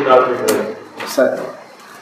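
Sheets of printed paper being handled and turned over, with a sharp rustle about half a second in, among short fragments of a man's voice.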